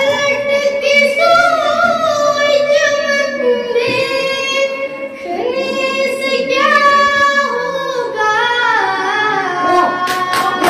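A girl singing an Urdu nazm solo into a handheld microphone. She holds long notes with ornamented wavers in the pitch.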